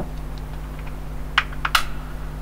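One soft knock, then a quick run of three sharp clicks about a second and a half in, over a steady low hum.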